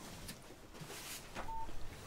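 A mobile phone gives a single short beep, one steady tone about one and a half seconds in, over quiet room tone with a few faint handling clicks. The beep comes as a second call is being handled on a phone that rings during calls.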